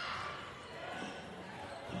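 Faint live sound of floorball play in an indoor sports hall: scattered taps of sticks and the plastic ball on the court, with distant voices of players and spectators.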